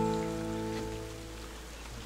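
A strummed acoustic guitar chord ringing out and fading away over about a second and a half, leaving faint hiss.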